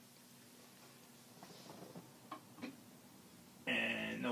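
Faint scattered clicks and small knocks of a vinyl record and turntable being handled, then near the end a louder pitched sound starts abruptly.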